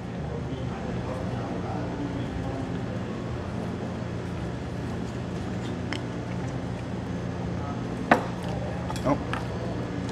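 A few sharp clinks of chopsticks on tableware, the loudest just after eight seconds, with others near six and nine seconds. Underneath runs a steady low hum with a faint murmur of voices in the background.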